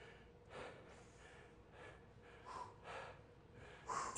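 A person breathing hard while holding an isometric resistance-band pull: four or five short, faint breaths spread across the few seconds.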